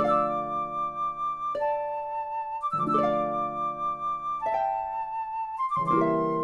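Orchestral ballet music led by flute and harp: a sequence of held chords, each one starting with a sharp plucked attack, a new chord about every one and a half seconds.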